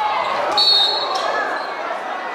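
Crowd noise in a basketball gym with a referee's whistle blowing one short, shrill blast about half a second in, a foul call on a drive that leaves a player on the floor.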